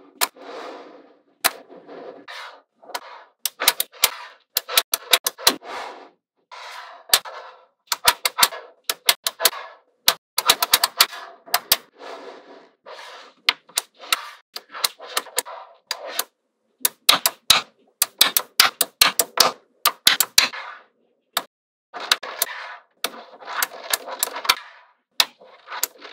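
Small neodymium magnetic balls clicking as they snap onto one another, in quick irregular runs of sharp clicks. Softer rattling of balls shifting against each other fills the gaps between the runs.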